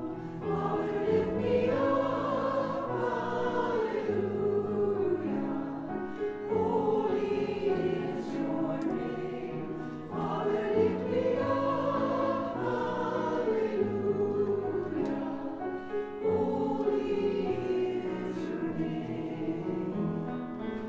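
Church choir singing a sacred anthem with piano accompaniment, in long sustained phrases that swell and fall every four to six seconds.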